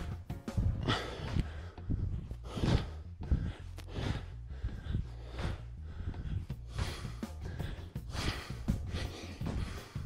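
Background music with heavy, gasping breaths from a man doing repeated squat jumps, about one breath a second.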